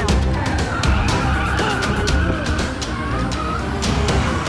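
Car tyres screeching in a long, wavering squeal as a car swerves, over rhythmic music with sharp percussive hits and a heavy low end.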